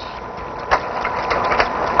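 Noise of a running 16mm film projector and its worn optical soundtrack: a steady hum and hiss with a thin held tone and scattered clicks and crackles.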